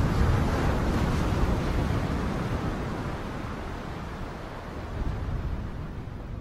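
Rushing, surf-like noise of an intro sound effect with no tones in it. It is loudest in the first second or so, eases off slowly, and swells again briefly about five seconds in.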